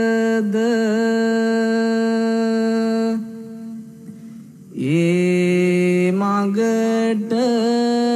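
A single voice chanting in long, steadily held notes, in the manner of Buddhist devotional chanting. The first note breaks off about three seconds in, and after a short quieter pause a new held note begins, with small turns in pitch near the end.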